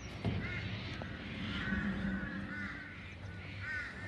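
A group of birds calling with many short, repeated chirps, over a low rumble.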